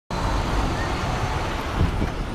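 Steady city street traffic noise, with wind on the microphone.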